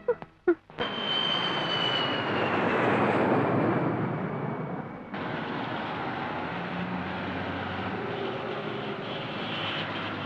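Jet airliner passing overhead, a high whine over its noise falling slowly in pitch. About five seconds in it cuts suddenly to steady city traffic noise.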